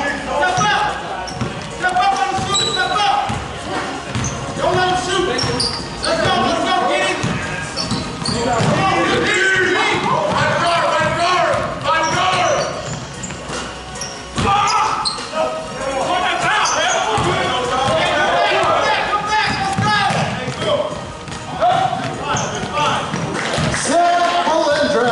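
A basketball bouncing on a hardwood gym floor during play, with players' voices. The sound echoes around a large gym.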